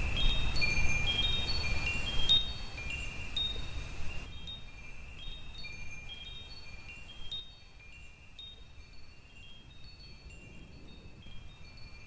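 Wind chimes ringing: a scatter of short, clear tones at a few high pitches struck irregularly, over a low rumble that drops away about four seconds in, the whole sound growing fainter toward the end.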